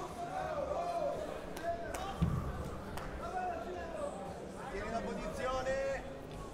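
Voices calling out, echoing in a large hall, while two wrestlers hand-fight on the mat. About two seconds in there is one dull thump, a body, hand or foot striking the wrestling mat.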